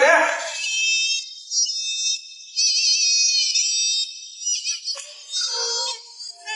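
A short spoken phrase at the start, then high-pitched, synthetic-sounding background music with wavering notes.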